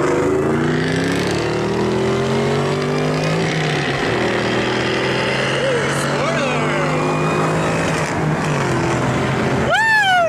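Two supercharged V8 sports cars, a Mustang SVT Cobra and a Jaguar F-type, accelerating hard side by side. Their engine notes climb in pitch over the first couple of seconds, then hold steady. Heavy wind and road noise come in through an open car window.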